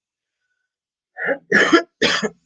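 Dead silence, then from about a second in a few short bursts of a man's voice that are not words.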